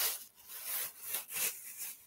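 Several quick rustling, rubbing strokes from objects being handled.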